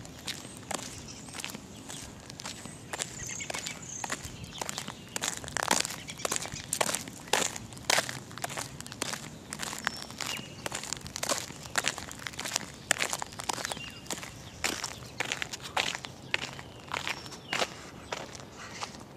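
Footsteps of someone walking on gritty pavement, irregular crunching steps roughly one to two a second.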